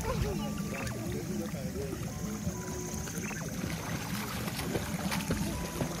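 Water moving and lapping in a swimming pool as small children swim and paddle, with a steady low rumble. Faint children's voices and light background music come over it.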